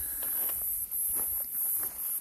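Footsteps on dry, loose soil, a few irregular steps, over a steady high-pitched hiss.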